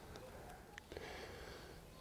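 Near silence: faint outdoor background with a couple of soft clicks a little under a second in.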